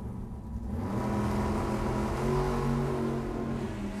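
Two drag-racing cars' engines revving hard at the start line and launching, the sound rising sharply about a second in and staying loud and steady.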